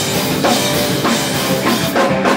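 A hardcore punk band playing live: distorted guitar and a drum kit with cymbals, loud and dense, with a hard hit about every half second.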